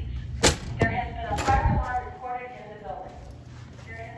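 Wheelock speaker strobe playing the fire alarm's recorded female voice evacuation message. It is cut across by two sharp clacks about a second apart, near the start, which fit a door's panic bar and latch.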